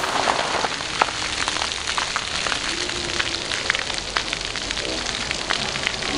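Water falling from a splash pad's tipping-can water feature and spattering down: a steady hiss of pouring water with many scattered drips and splashes.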